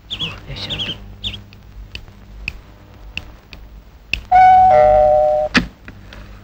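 Doorbell chiming a two-note ding-dong about four seconds in: a higher note, then a lower one sounding over it for about a second.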